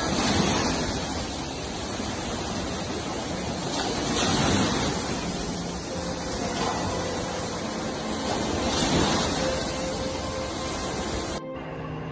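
Water in a covered swimming pool sloshing in large waves as an earthquake shakes it, a rushing noise that swells and fades about every four seconds, with music underneath. It cuts off suddenly near the end.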